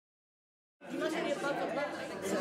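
Dead silence, then a little under a second in, the chatter of many diners talking at once in a large room.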